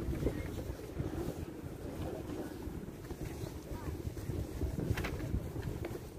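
Wind rumbling on a handheld phone's microphone while walking outdoors, with faint voices of passers-by and a brief knock about five seconds in.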